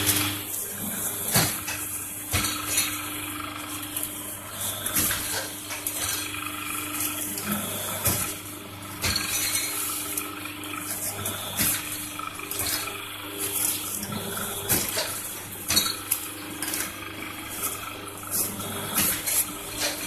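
A paper plate making machine humming steadily while sheets of silver-laminated paper are handled and fed into its dies, with frequent crinkling rustles and occasional clanks of the press.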